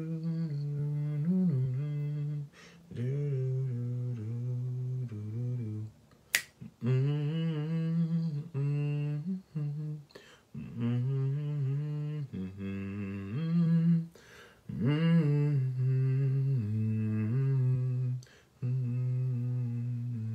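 A man humming a wordless tune to himself in a low voice, holding notes in short phrases that step up and down in pitch with brief pauses between them. A single sharp click, like a finger snap, cuts in about six seconds in.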